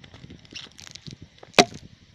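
Spray and debris from a just-launched vinegar-and-baking-soda bottle rocket coming down: faint scattered ticks, then one sharp knock about one and a half seconds in.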